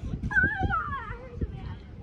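A single high-pitched, wavering cry that falls in pitch, lasting under a second, over a low rumble.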